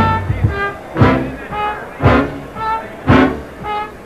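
Big band dance orchestra playing, with held notes and a loud accented ensemble hit about once a second.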